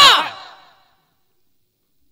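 The last word of a man's spoken narration trailing off into studio reverb. The reverb fades within about a second, and the rest is dead silence.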